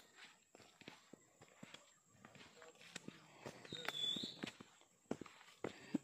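Quiet footsteps on dry leaf litter and twigs: scattered faint clicks and rustles, with a brief high rising chirp about four seconds in.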